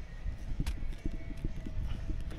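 A kitchen knife cutting into a whole watermelon, with faint irregular crunches and clicks from the rind, over a low, gusting rumble of sea wind on the microphone.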